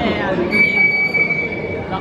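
Referee's whistle blown in one long steady blast, starting about half a second in and held for about a second and a half: the signal for kick-off.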